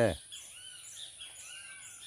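Faint bird calls in forest: a few short arched chirps scattered through a quiet background.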